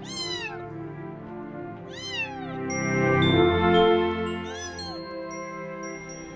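Young kitten meowing: three short calls about two seconds apart, each dropping in pitch.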